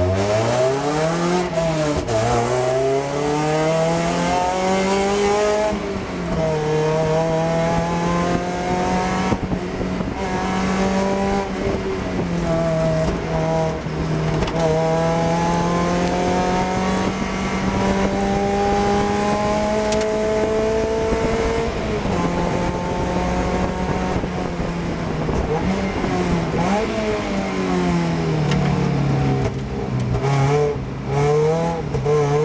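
Race-prepared Mazda MX-5's four-cylinder engine heard from inside the car, revving up through the gears with the pitch dropping back at each upshift. It then holds one long, slowly rising pull, and dips and rises again near the end as the car slows for a corner.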